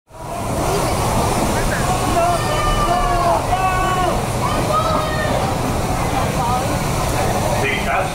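Indistinct voices of people talking over a steady rushing background noise, fading up from silence at the very start.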